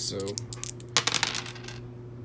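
Small plastic dice clattering and tumbling on a wooden desk, a quick run of sharp clicks that is loudest about a second in and dies away before the end.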